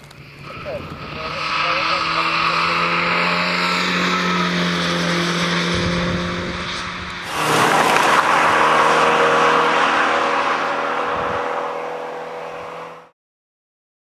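Fiat 125p rally car's four-cylinder engine run hard at high revs as it comes past on the stage. About seven seconds in the sound switches abruptly to another car accelerating away, its engine mixed with a hiss of tyres on loose gravel. The sound stops suddenly near the end.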